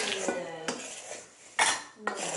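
A wooden spoon stirring blueberry pie filling in a stainless steel mixing bowl, scraping and knocking against the metal, with a louder knock about a second and a half in.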